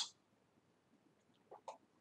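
Near silence, broken near the end by two faint, short swallowing sounds from a person drinking from a cup.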